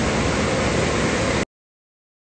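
Steady, loud rushing noise picked up outdoors by a phone's microphone. It cuts off abruptly into dead silence about one and a half seconds in.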